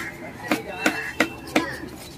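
A large knife chopping yellowfin tuna flesh into cubes on a wooden chopping block: four sharp strikes about a third of a second apart, starting about half a second in.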